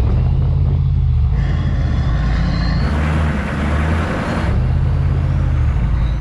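Off-road 4x4 engines running hard under load in low range, a steady deep drone whose tone changes a few times.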